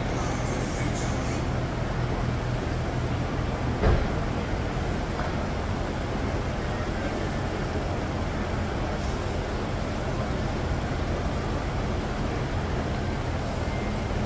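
A steady low mechanical hum with a continuous noise over it, and a single short knock about four seconds in.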